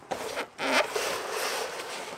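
Wooden board being pulled out of a cardboard shipping box, scraping against the cardboard with crinkling bubble wrap, in rough bursts of rustling.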